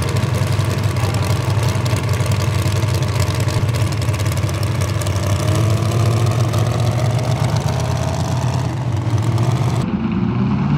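Small-block V8 of a 4x4 pulling truck idling steadily.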